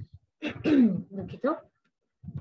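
A woman clears her throat about half a second in.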